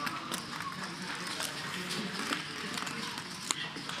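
Low poker-table room ambience: faint background chatter with a few light clicks spread through it.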